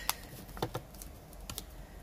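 A handful of light, separate clicks and taps from a clear photopolymer stamp being picked up and set down on the stamping mat.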